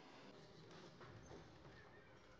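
Near silence: room tone with a few faint, brief knocks.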